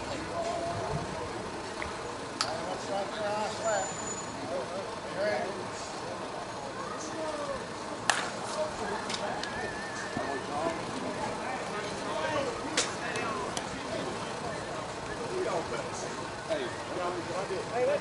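Voices of players and spectators calling across an open softball field, broken by a few sharp knocks. The loudest, about eight seconds in, is a slowpitch softball bat hitting the ball.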